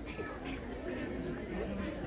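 Faint voices talking and chattering, with no one voice standing out.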